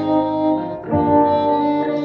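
Instrumental passage of a live acoustic band: accordion chords held over acoustic guitar and double bass, changing to a new chord about a second in.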